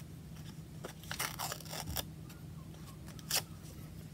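A thin strip being torn off the edge of a printed craft snippet by hand: a few short, soft rips, the sharpest a little over three seconds in.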